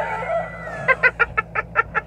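A girl's high-pitched laughter: a long squealing note sliding slowly down in pitch, then about a second in a quick run of short 'ha' sounds, about five a second, cackling like a hen.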